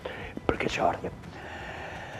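Speech only: a man's voice speaking briefly and softly, then a short pause.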